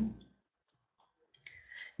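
A pause in a woman's talk over a microphone: a few faint small clicks in near quiet, then a short soft breath just before she speaks again.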